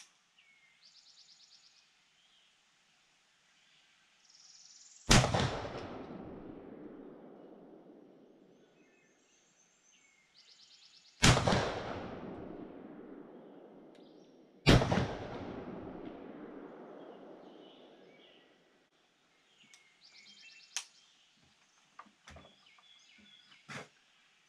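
Three shots from a Browning Gold 10-gauge semi-automatic shotgun firing 3½-inch magnum slugs: one about five seconds in, one about eleven seconds in and one about three and a half seconds after that, each followed by a few seconds of echo fading away. A few light clicks near the end.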